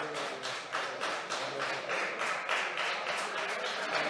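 Applause: a group of people clapping, many irregular claps running together.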